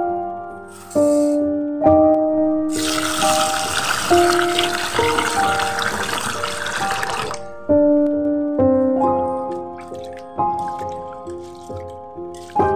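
Gentle piano background music throughout. Dry basmati rice grains pour briefly into a steel bowl about a second in. From about three seconds in, tap water runs into the steel bowl of rice for roughly four and a half seconds, then stops.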